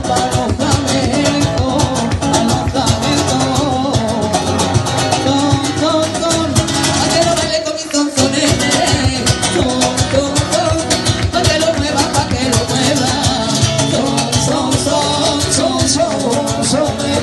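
Live rumba played through a small PA: a woman singing into a microphone to a strummed guitar with a steady beat. It dips briefly about eight seconds in.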